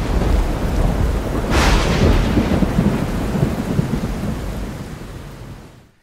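Thunderstorm sound effect: rolling thunder over rain, with a sharper crack about one and a half seconds in, then fading out over the last two seconds.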